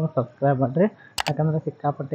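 A man speaking, with a sharp double mouse-click sound effect about a second in, from an animated subscribe-button overlay.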